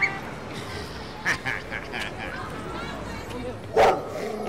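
Street ambience with scattered voices, including high children's voices, and a short loud sound near the end.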